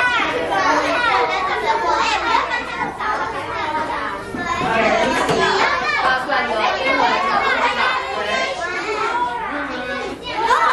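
Many young children talking over one another at once, a steady hubbub of overlapping voices with no single speaker standing out.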